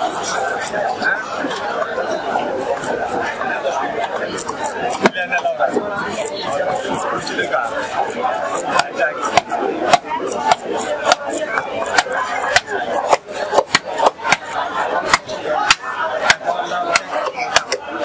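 Background chatter of several voices, with sharp clicks and cracks from a large catla carp being cut against an upright fixed blade. The clicks come faster and louder from about halfway through, several a second near the end.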